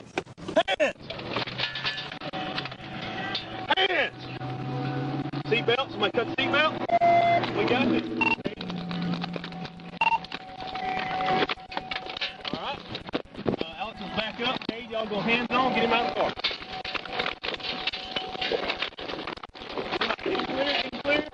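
Indistinct voices of several people shouting, too jumbled to make out, with a steady high tone coming and going through much of it.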